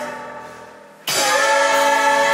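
A mixed ensemble of female and male voices singing a musical-theatre number. A held note dies away over the first second, then the full ensemble comes back in loudly about a second in, holding sustained notes.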